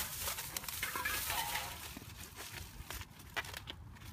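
Thin plastic grocery bag rustling and crinkling as hands rummage through it, loudest in the first two seconds and then thinning to scattered crackles.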